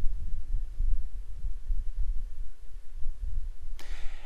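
Low, uneven rumble and hum with nothing higher above it.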